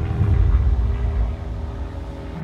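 Steady low rumble of wind buffeting an outdoor microphone.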